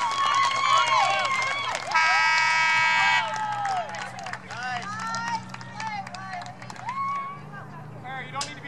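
Players and spectators cheering and shouting in high voices just after a goal in a girls' soccer match. A steady held note sounds over the shouting for about a second, some two seconds in. The cheering dies down over the second half.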